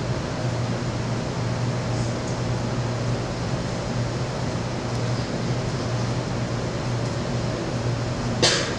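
Steady classroom background hum: a constant low drone under an even hiss. It is unbroken, with only a couple of faint ticks.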